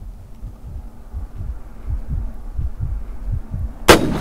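Low, muffled heartbeat-like thudding, about three beats a second and slowly building, then near the end a single sharp report as an AirForce Texan .50-calibre PCP air rifle fires.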